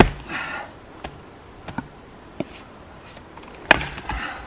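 An axe striking a birch firewood round twice, a sharp chop right at the start and another near the end, the second blow splitting a piece off the round.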